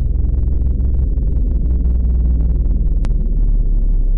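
Loud, steady low rumble with a brief click about three seconds in.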